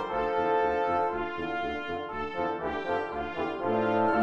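Background music with sustained melodic notes over a steady bass beat.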